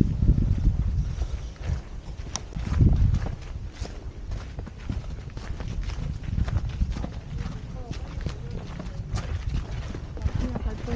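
Footsteps of a hiker walking on a dirt mountain trail and down earthen steps: a quick, irregular run of scuffs and knocks over a low rumble on the microphone.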